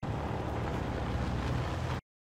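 Steady low rumble of a car driving away, with some wind noise.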